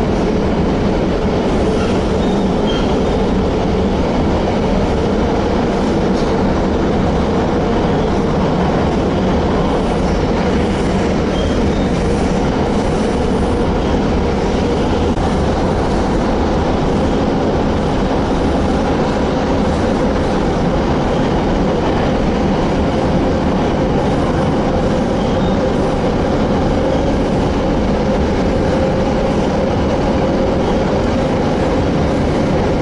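Metro train heard from inside the car, running steadily at speed: a constant loud rumble of wheels on the rails with a steady hum.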